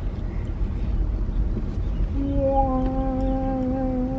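Low, steady rumble inside a car cabin; about two seconds in, a person hums one long, steady note that carries on just past the end.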